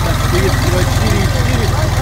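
Jinma JMT3244HXC mini tractor's three-cylinder diesel engine idling with a steady, evenly pulsing low throb.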